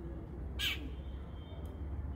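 A crow cawing once, a single short harsh call a little over half a second in.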